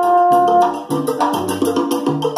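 A trombone holds one note that ends under a second in, over a Latin jazz backing track whose bass and percussion play on.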